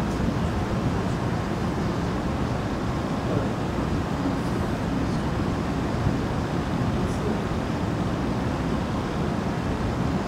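Steady room noise with no speech: an even, low rumbling hum that holds at one level throughout.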